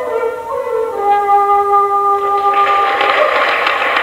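A traditional Irish flute plays the closing notes of a fling, stepping down to a long held final note. Applause swells in under the note over the last second and a half.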